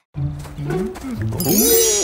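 A cartoon character's wordless vocalising, a voice that glides up and down in pitch, over background music. A bright high shimmer comes in near the end.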